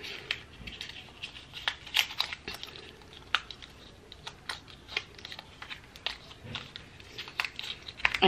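A small cardboard lip-oil box being picked and torn open by hand with long fingernails: scattered sharp clicks, crinkles and small tearing sounds.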